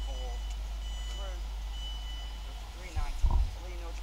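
Electronic warning tone from a Class 390 Pendolino standing at the platform, three long steady high beeps, typical of the door alarm before the doors close, over background voices. A loud thump about three seconds in.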